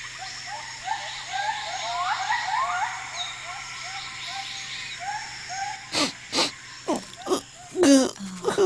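Forest ambience from an animated soundtrack: a chorus of short rising animal calls, a few a second, over a faint steady hum. After about six seconds the calls give way to a handful of sharp swishing strokes.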